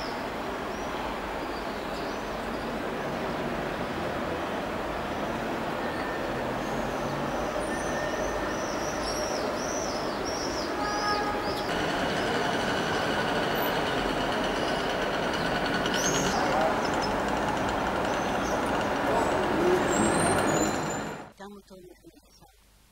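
Steady outdoor town ambience: a dense wash of traffic noise and many voices, with high chirps over it. It cuts off suddenly near the end.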